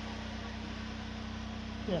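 A steady low hum over an even hiss, unchanging throughout; a voice says "yeah" right at the end.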